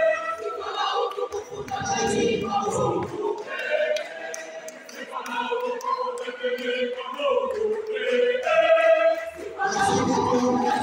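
Choir singing unaccompanied in several voice parts, with a few low thumps among the singing.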